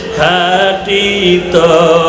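A man's voice chanting a slow Bengali devotional song of repentance through a microphone and loudspeaker system, in long held notes with a wavering vibrato. A short break between phrases comes about a second in.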